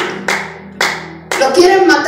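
A few sharp hand claps, about half a second apart, with a voice calling out over them in the second half.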